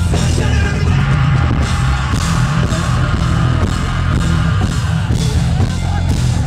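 Live rock band playing at full volume through an arena PA: distorted guitars, drum kit and sung vocals, with heavy, booming bass.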